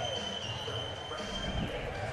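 Indistinct voices and arena crowd murmur, with a thin steady high-pitched tone running through most of it and stopping near the end.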